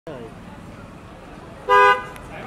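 A vehicle horn gives one short, loud honk near the end, a steady two-note blare, over a low hum of street noise.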